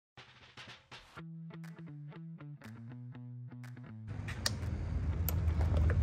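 Short intro music: a few plucked guitar-like notes, then a steady repeating run of held notes. About four seconds in, the music gives way to a low steady hum with scattered clicks that grows louder.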